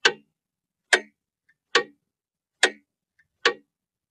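Mechanical clock ticking: five sharp ticks a little under a second apart, with a faint click between some of them.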